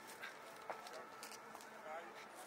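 Faint open-air ambience with distant voices and a few light clicks and knocks.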